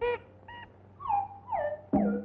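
Cartoon sound effect of short whimpering yelps: a brief cry and a short note, then two cries that fall in pitch about half a second apart. A sharp knock comes near the end.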